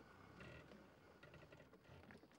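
Near silence: faint outdoor room tone with a few faint ticks.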